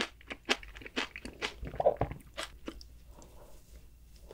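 Close-miked eating sounds: crisp crunches and chewing of a chocolate dessert. They come thick and fast for the first two and a half seconds, then thin out and grow quieter.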